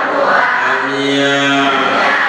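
A Buddhist monk chanting in long, low held notes into a microphone, amplified through a loudspeaker.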